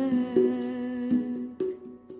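Sholawat devotional song closing on a long held sung note, with a few sharp accompanying strikes. The music dies away near the end.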